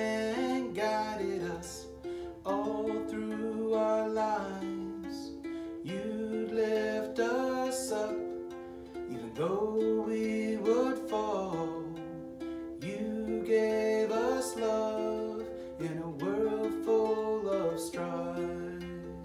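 A man singing a verse of a song while playing a ukulele.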